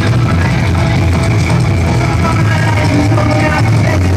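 Live psychobilly band playing loud, with electric guitar over a steady low line from a coffin-shaped upright bass.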